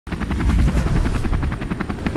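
Helicopter rotor chopping steadily, about seven beats a second over a deep rumble, starting abruptly at the very start.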